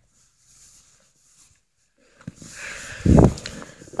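Near silence for about two seconds, then rustling and one short, low thump near the end: handling noise from a tablet being shifted in the hand.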